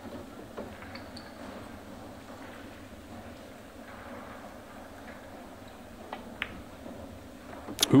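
Quiet pool-hall room tone with a low murmur and a few faint clicks, then near the end one sharp click of pool balls striking.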